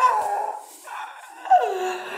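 A young man's drawn-out excited vocal cries, with no words: one long held cry that fades about half a second in, then a second cry about one and a half seconds in that slides down in pitch.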